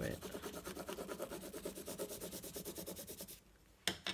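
A pencil scribbling rapidly back and forth over paper laid on patterned tape, taking a texture rubbing with a harder pencil. The scratchy strokes stop about three and a half seconds in, followed by a single short knock just before the end.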